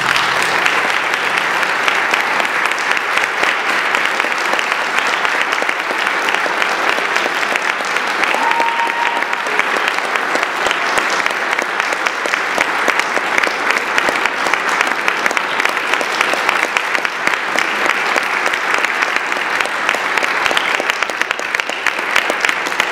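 Audience applauding steadily. Briefly, about eight seconds in, a short high steady tone sounds above the clapping.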